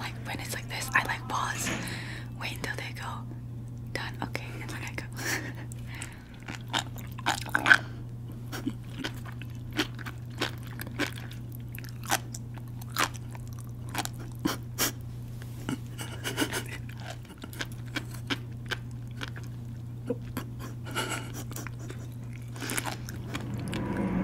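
Close-up chewing of sea grapes (umibudo seaweed): many sharp, irregular crackling pops as the small beads burst in the mouth, over a steady low hum.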